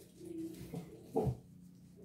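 A dog gives one short yelp about a second in, falling sharply in pitch, with a few fainter whimpers before it.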